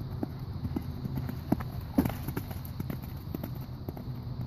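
Hoofbeats of a horse moving over sand arena footing: short, irregular soft thuds a few times a second, the strongest about halfway through, over a steady low rumble.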